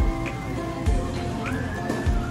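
Background music with a low beat and held notes, one note sliding up in pitch about one and a half seconds in.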